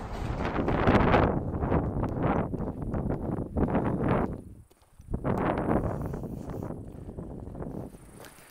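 Footsteps of a hiker walking on a trail, about two a second, mixed with rustling and wind on the handheld microphone. The sound drops out briefly just past halfway, then the steps resume.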